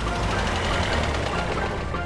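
A loud, rumbling engine-like noise over background music, swelling in the middle and easing off near the end.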